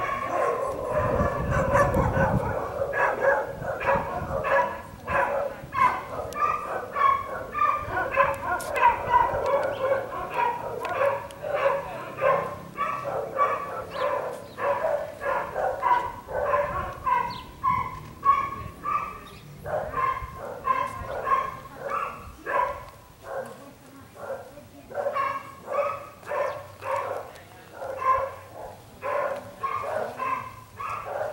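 A dog barking over and over, two or three short barks a second, without let-up.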